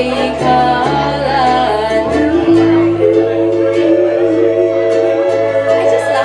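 Live acoustic music: a woman sings long held, gliding notes over a strummed ukulele, with steady low bass notes underneath that shift about halfway through.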